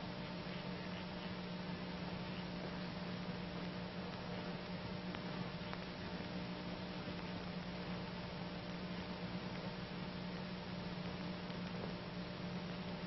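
Steady hiss and low hum of an old recording, with faint soft bubbling as breath is blown slowly through a soapy bubble pipe.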